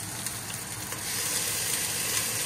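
Bacon sizzling in a frying pan, a steady crackling hiss that grows a little louder about a second in.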